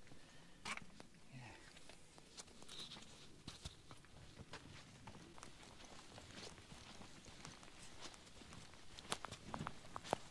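Faint, irregular clicks and knocks of a loaded steel-framed wheelbarrow being pushed over grass and soil, with footsteps, and a sharper knock near the end.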